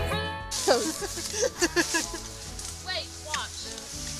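Background music ending about half a second in, then short snatches of people's voices over a steady low hum.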